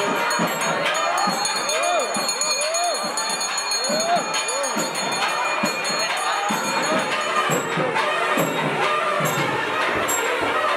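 Temple bells ringing steadily and fast during the camphor-flame offering (deeparadhana) to the deities, with music and crowd voices underneath. The high bell tones drop away about seven and a half seconds in.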